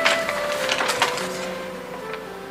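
A small folded paper note being handled and unfolded: a few crisp crinkles, the sharpest right at the start and about a second in, over soft sustained music notes.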